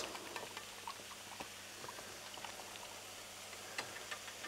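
Minced beef and diced peppers frying in a wok: a faint, even sizzle with scattered small pops and crackles.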